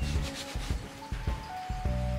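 A hand brushing and rubbing across a freshly stapled upholstered seat cover, with soft background music holding steady notes underneath.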